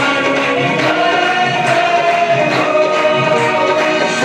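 A group of voices singing a Hindu devotional song in unison, held notes gliding slowly, over a steady repeating percussion beat.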